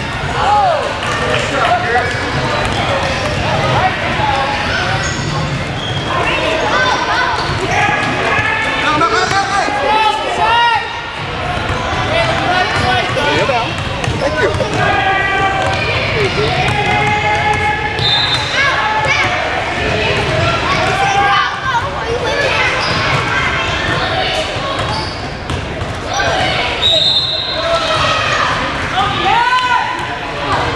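A basketball being dribbled on a hardwood gym floor while voices shout and talk throughout, echoing in a large hall.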